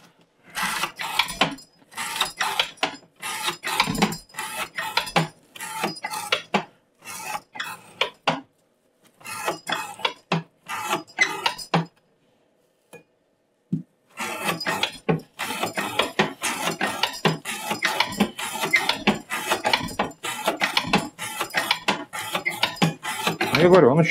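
Knife blade of laminated CPM 15V steel drawn through rope under a weighted rope-cutting test rig, a quick succession of short rasping, scraping strokes. It breaks off briefly about eight seconds in and for about two seconds at twelve seconds. The blade is still cutting cleanly deep into the test.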